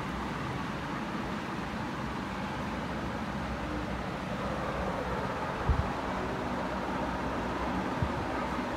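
Steady room background noise, a low hum under an even hiss, with one brief low thump about two-thirds of the way through.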